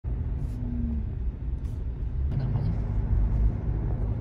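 Steady low rumble of a car driving on a highway, heard from inside the cabin: engine and road noise.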